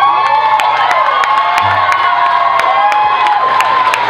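A crowd cheering, with many overlapping high-pitched shrieks and whoops and scattered sharp claps.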